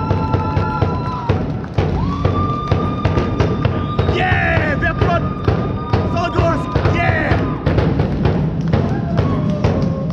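Arena music over the public-address system: a steady drum beat with long held synth notes and short melodic figures on top, played loud through the building.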